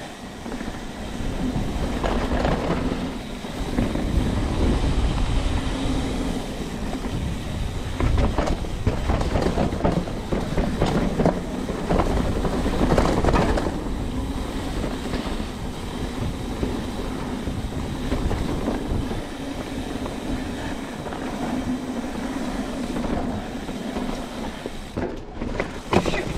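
Trek 29er mountain bike running fast down a rough dirt trail: tyres rumbling over the ground and the bike rattling and clattering over bumps, with wind buffeting the handlebar-mounted microphone.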